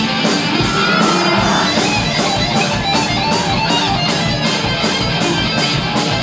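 Live rock band playing loud, led by amplified electric guitar over a steady beat of about four hits a second.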